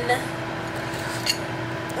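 A pause in talk: a steady low hum of room tone with a couple of faint, short clicks a little over a second in.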